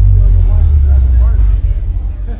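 A very loud, deep bass boom through a concert PA, holding steady and then breaking up and fading over the last half second. Faint crowd voices sit underneath.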